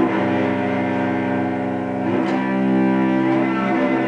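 Cello bowed in long held notes in an improvised piece, moving to new notes at the start and again about two seconds in.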